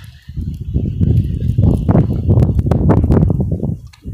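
Strong wind buffeting a phone microphone: an uneven low rumble with irregular crackles.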